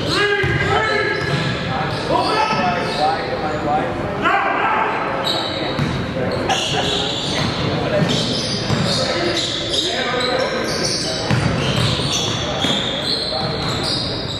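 Basketball game play in a large gym: the ball dribbled on the wooden court floor, with players' voices calling out, all echoing in the hall.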